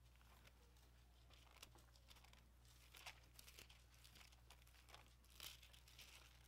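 Near silence with a low steady hum, broken by faint paper rustles and ticks from thin Bible pages being turned, the loudest about three seconds in and again near the end.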